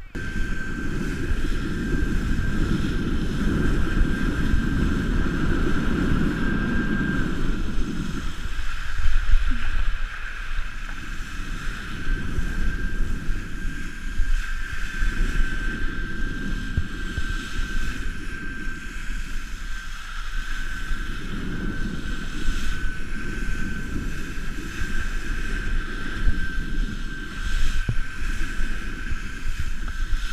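Wind buffeting the microphone of a cased action camera and water rushing under a wakeboard as the rider is towed by the cable, the low rush swelling and easing every few seconds. A thin steady high whine runs underneath.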